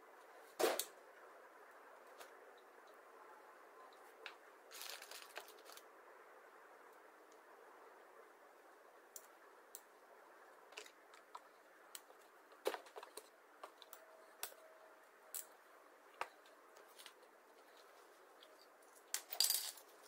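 Scattered light clicks and clinks of small metal parts and tools being handled on a wooden workbench, with a few louder sharp clicks about a second in, partway through and near the end, over a faint steady hiss.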